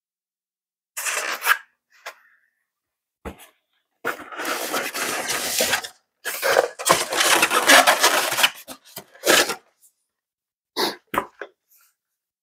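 Styrofoam packaging scraping and rubbing as a foam insert is pulled away and a foam model-plane fuselage is lifted out of its styrofoam tray. The sound comes in several separate bursts of rustling noise, the longest in the middle, with a few short sharp knocks.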